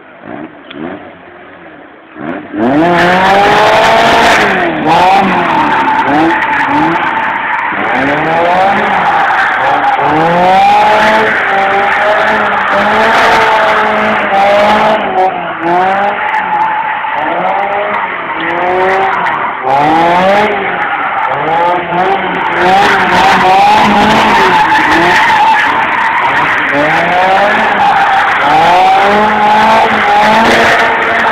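Westfield kit car's engine revving hard up and down again and again, with tyres squealing through burnouts and powerslides. It starts suddenly about two and a half seconds in.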